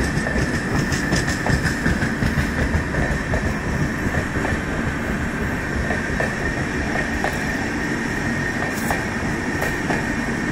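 Indian Railways LHB passenger coaches rolling past close by, wheels clacking over the rail joints under a steady rumble. A steady high whine from the wheels on the rails runs throughout, with a few sharp clicks about a second in and again near the end.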